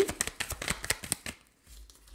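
A hand-held deck of cards being shuffled: a quick, dense run of crisp card flicks for just over a second, then it stops.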